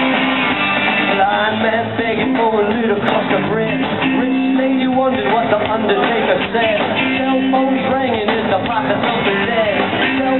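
Live rock band playing: electric guitar and drum kit going without a break, with a melodic line bending up and down over steady low notes.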